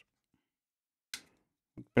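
Mostly near silence while a plastic camera frame is being handled, with one short faint handling noise about a second in and a spoken word at the very end.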